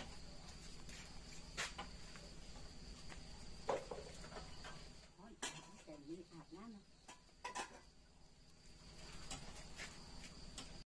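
Banana leaves crackling and rustling in short bursts as they are folded by hand into wrappers, over a steady high-pitched insect drone.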